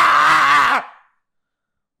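A man's loud, raspy scream, held for about a second, then cut off abruptly into dead silence.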